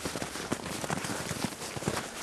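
A horse's hooves crunching in packed snow at a walk, mixed with the walker's own footsteps crunching close by: a quick, uneven run of crisp crunches.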